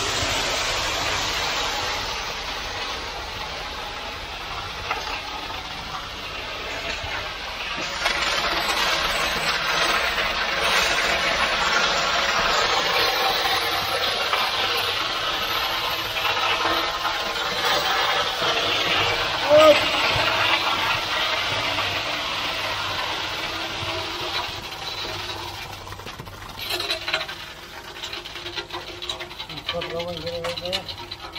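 Wet concrete pouring out of a concrete pump hose onto a floor slab and being spread with a rake, a steady gritty rushing that eases off near the end.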